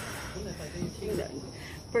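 Insects chirring steadily at a high pitch, with faint voices underneath.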